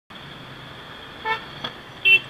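A single short vehicle horn toot, a little past halfway, over a low steady hum of idling engines in city traffic.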